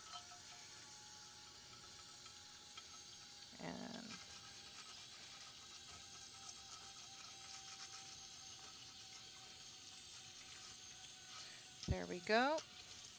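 Faint, steady running of tap water into a stainless steel sink, splashing over a glass dish as it is rinsed and scrubbed with a sponge.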